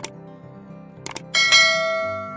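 Subscribe-button sound effects: a short double mouse click, another double click about a second later, then a bright notification-bell chime that rings on and slowly fades, over soft background music.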